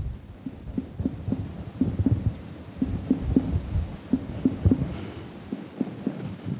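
Finger-on-finger percussion of the abdomen: a steady run of short taps, about three or four a second and often in pairs, as the fingers of one hand strike the fingers of the other laid flat on the belly. The note is tympanic, the sign of gas-filled bowel beneath.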